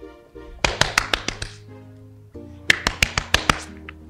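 Two quick runs of about seven sharp hand strikes each, a little over a second apart, over soft background music: a sleeping woman being roughly woken.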